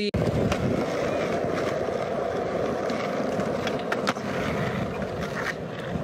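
Skateboard wheels rolling steadily over tarmac, a continuous even rumble, with a few light clicks from the board, the clearest about four seconds in.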